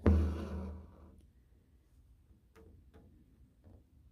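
Embroidery needle and thread worked through cotton fabric in a hoop: a short burst of handling noise at the start that fades within about a second, then a few faint ticks and rustles as the thread is drawn through.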